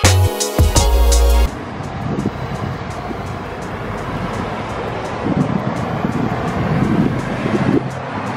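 Background music with a heavy beat for about the first second and a half, cutting off suddenly. Then steady road-traffic noise with wind on the microphone, swelling a little as cars pass.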